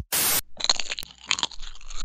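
Cartoon sound effect of popcorn being crunched and chewed: a short burst of noise at the start, then a run of irregular crisp crunches.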